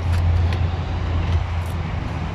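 A car engine running with a steady low hum that eases off about halfway through, over outdoor traffic noise.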